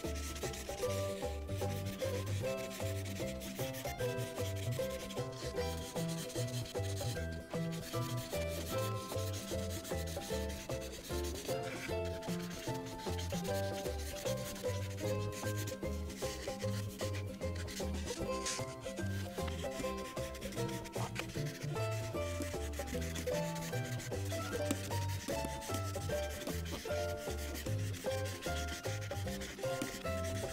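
Prismacolor marker tip rubbing across paper in steady back-and-forth strokes as a large area is filled in. Soft background music with a simple stepping melody and bass plays under it.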